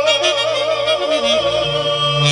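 Live wedding band music: a male singer holds one long note with heavy vibrato over a sustained amplified bass line, which steps up to a higher note near the end, with saxophone in the band.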